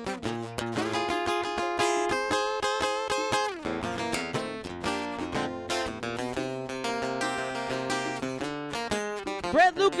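Blues guitar playing an instrumental break in a live band, moving pitched note lines, with percussion keeping time underneath.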